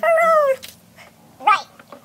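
A high-pitched, squeaky voice holds out the word 'all!' with a falling pitch. About a second and a half in comes one short high word.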